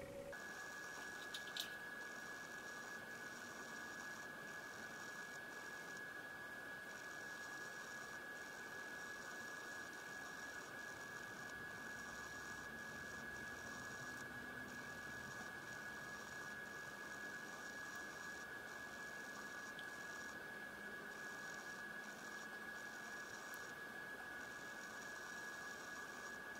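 A faint, steady, high-pitched electronic tone held unbroken over low hiss, starting and stopping abruptly.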